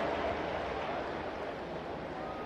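Stadium crowd noise, an even wash of sound slowly dying down.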